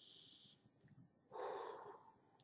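A woman breathing: a short hissing breath in, then a fuller breath out about a second and a half in, like a sigh.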